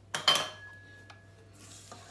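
A spatula knocks against the stainless steel stand-mixer bowl with a sharp clank that rings briefly, followed by faint scraping of the spatula along the bowl's side.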